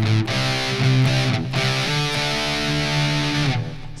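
Distorted electric guitar power chords on a Fender Stratocaster through a Fender Mustang GTX amp set to a metal tone. Chords are struck, and one is struck once and slid up the neck. It rings out and is cut off shortly before the end.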